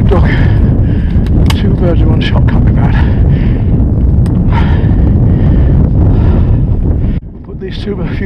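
Wind buffeting the microphone, with twigs snapping and branches scraping as someone pushes through dense scrub on foot. The wind noise drops out suddenly near the end.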